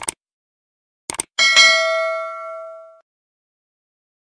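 Two short clicks, then a bell-like ding with several ringing tones. It comes about a second and a half in and fades away over the next second and a half.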